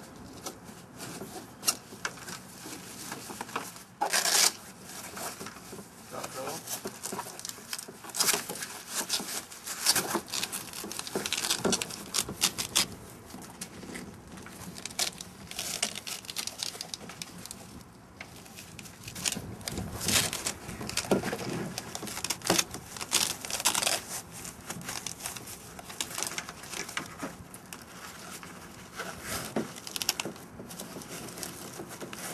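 Backpack straps and buckles being handled and adjusted: irregular rustling, scraping and sharp clicks in bursts, with a louder burst about four seconds in and more around ten and twenty seconds.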